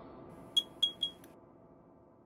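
Three short high electronic beeps about a quarter-second apart, over the fading tail of the intro music.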